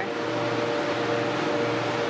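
Steady machine hum with an even hiss from store freezer and air-handling equipment, holding a constant level with a few unchanging low tones.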